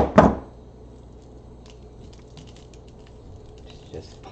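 Two sharp clacks in quick succession at the start, then faint small clicks and rustling as craft wire and tools are handled on a cutting mat.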